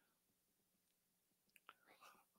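Near silence, with one faint click near the end.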